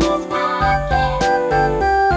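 Children's background music: a keyboard tune stepping down note by note over a steady beat.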